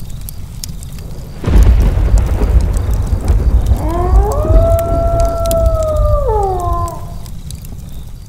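Intro sound design: rain with a deep rumble of thunder coming in about a second and a half in. Over it a long wolf howl rises, holds steady and falls away near the end.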